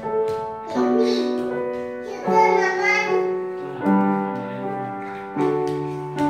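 Upright piano played slowly, with chords struck four times, about every one and a half seconds, and left to ring and fade between strikes.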